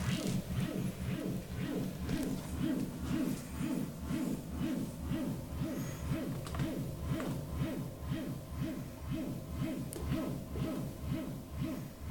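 Experimental electronic noise loop run through delay and echo effects with feedback: a low pulse repeating about three times a second under wavering pitched tones and scattered clicks.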